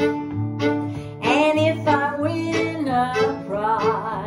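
Instrumental break of a folk blues: a fiddle bowing a melody with vibrato over steady guitar strumming. The fiddle comes in just over a second in.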